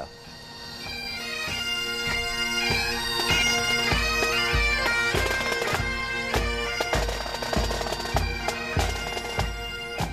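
Pipe band playing a tune in traditional Scottish style: bagpipes over their steady drone, swelling in over the first few seconds. A bass drum joins about a second and a half in, beating steadily a little under twice a second.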